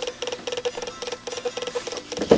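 A light, regular ticking, about six or seven ticks a second.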